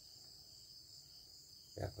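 Faint, steady high-pitched chirring of crickets in the background, with a man's voice starting near the end.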